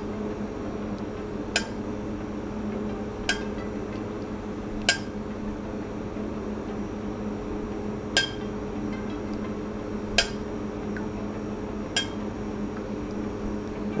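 A metal spoon clinking against the rim of a stainless saucepan about six times, a couple of seconds apart, each a short bright ring, while a basil and agar-agar mixture is dripped into cold oil for spherification. A steady low hum runs underneath.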